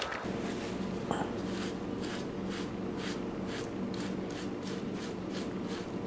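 A damp paper towel rubbed over a salted squirrel hide, wiping off the leftover salt in short repeated strokes, about three a second, over a steady low hum.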